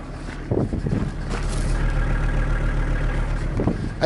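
A VW T4 Transporter's five-cylinder diesel engine idling steadily, louder from about half a second in.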